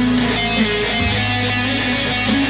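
Amplified electric guitar playing a melody over a sustained low bass line, the bass note changing about a second in.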